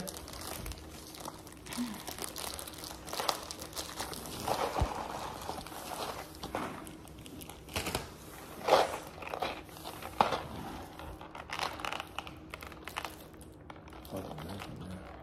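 Plastic wrapping on a jelly bean box crinkling as it is pulled open and handled, in irregular rustles and crackles, the loudest about nine seconds in.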